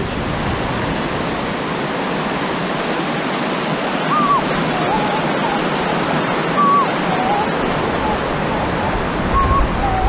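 Glacier-fed mountain creek rushing over rocks in whitewater rapids, a steady rush of water. A few short, high chirping tones come through over it, starting about four seconds in and again near the end.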